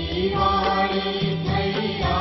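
Hindu devotional chanting set to music: a sung mantra carried on sustained melodic lines over a steady instrumental drone.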